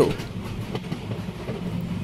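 A moving passenger train running steadily on the rails, a low continuous rumble as heard from inside a carriage.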